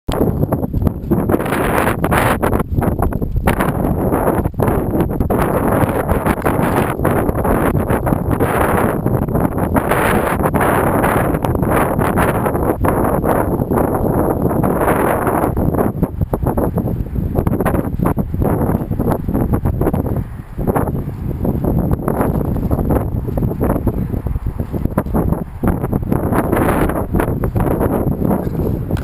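Wind buffeting a camera microphone: a loud, continuous rumble with uneven gusts, easing somewhat after about sixteen seconds, over a faint steady high whine.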